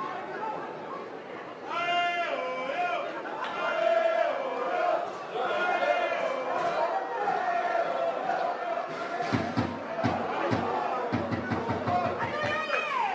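Voices shouting over a background of crowd chatter at a rugby match, the shouts long and drawn out, as play piles up in a maul. A few dull low thumps come near the end.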